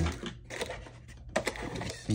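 Hands rummaging in the camera box's packaging insert: scattered light clicks and rustles of plastic, with one sharper click about 1.4 s in.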